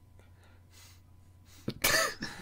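One loud, sharp sneeze-like burst from a person near the end, after a quiet stretch with a faint steady low hum.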